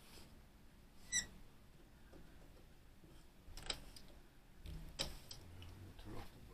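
Quiet background with a few faint clicks, and one short high chirp about a second in.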